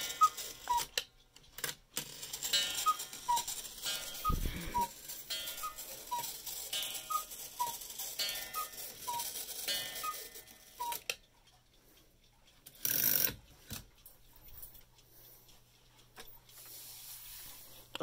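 Carved wooden cuckoo clock calling its two-note cuckoo, a higher note falling to a lower one, about seven times at roughly 1.5-second intervals before stopping. There is a dull thump about four seconds in and a short rustle of handling around thirteen seconds.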